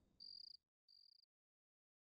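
Two short, faint cricket chirps in the first second or so.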